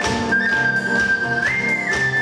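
Ocarina playing long, pure, high melody notes, with a short step up in pitch about one and a half seconds in, over piano and a drum kit keeping a steady beat with cymbals.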